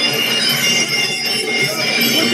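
Traditional Muay Thai fight music (sarama), a shrill, nasal reed pipe holding high sustained notes over the rest of the band.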